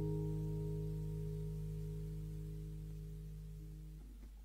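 The final chord of a slow acoustic guitar arrangement ringing out and fading away steadily.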